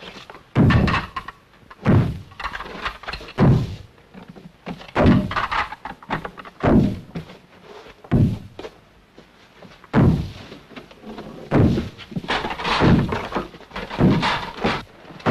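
Heavy wooden door being battered, about nine dull, echoing thuds, one roughly every second and a half.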